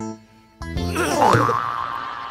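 Comic sound effect over background music: a held note, then about half a second in a sudden wobbling, sliding 'boing'-like sound that settles into a steady high tone.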